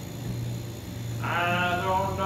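A man's voice begins singing or humming a long, wavering held note about a second in, over a steady low hum.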